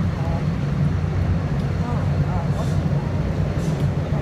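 Steady low rumble inside a DART light-rail car running along the line, with a few brief, faint voices of other passengers.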